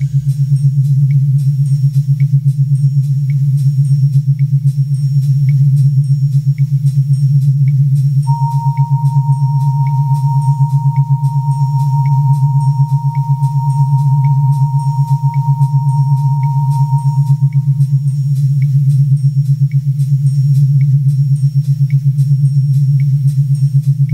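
Synthesizer music without drums: a low, rapidly pulsing bass drone under a light regular tick about twice a second. A single pure, high held tone comes in about a third of the way through and fades out about three-quarters through.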